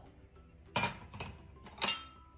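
Two sharp metallic clinks about a second apart, the second the louder: a stainless steel bowl being set down and handled.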